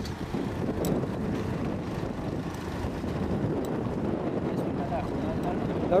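Steady, low rushing noise of wind buffeting the camcorder microphone outdoors, with rustling of grain stalks as the camera moves through the crop; a man's voice starts right at the end.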